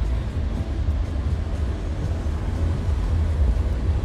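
Low, steady rumble inside a car cabin: engine and road noise.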